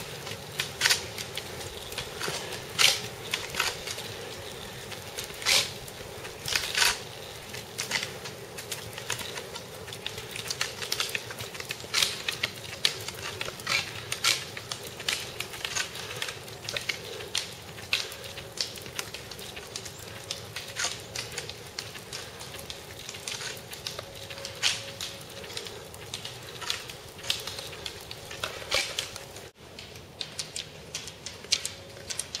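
Roller-ski pole tips clicking on asphalt, a few irregular sharp clicks a second, over a steady hum of roller-ski wheels rolling on the pavement.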